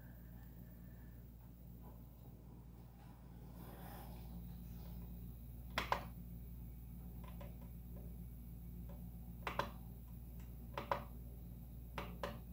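Three short clicks, spaced a few seconds apart, from the Prusa printer's LCD control knob being pressed to step through its menu, over a faint steady hum.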